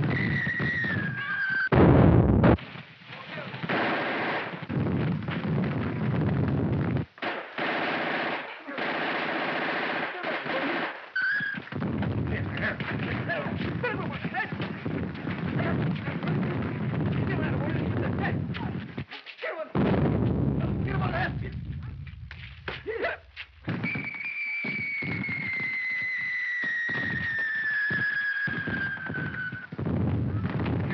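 Film sound effects of street fighting: sustained rapid machine-gun fire and gunshots, with a loud bang about two seconds in. Near the end comes a long whistle that falls slowly in pitch.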